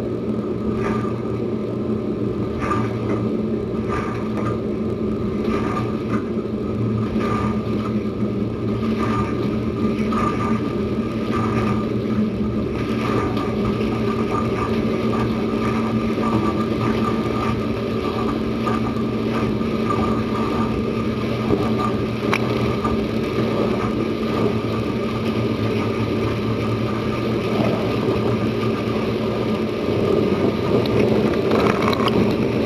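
Dishwasher running a wash cycle, heard from inside the tub: the circulation pump's steady hum under the hiss and splash of water from the spinning lower spray arm, with a faint regular knock about once a second in the first half. The arm spins freely, its clog cleared with vinegar.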